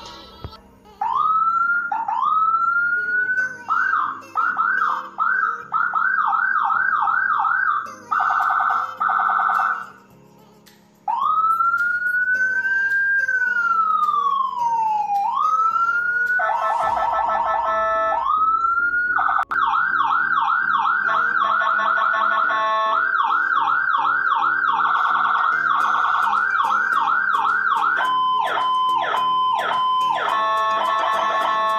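Electronic ambulance siren switched through its tones: rising wails, a long slow wail that rises and falls, fast repeated yelp sweeps, a quick warble, and a blaring horn-like tone, with a short break about ten seconds in. Music plays quietly underneath.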